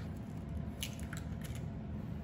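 A chicken eggshell cracked with a knife blade: one sharp tap a little under a second in, then a few smaller clicks as the shell is pulled open over the bowl.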